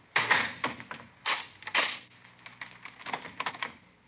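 Radio-drama sound effects: a quick, irregular run of sharp clicks and taps, loudest just after the start and again between one and two seconds in.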